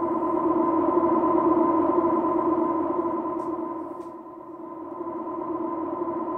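Background music: a sustained synthesizer pad holding steady chords, dipping briefly about four seconds in before swelling back.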